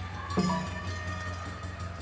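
A drum struck once about half a second in, its low ring and a few fainter higher tones carrying on and slowly fading.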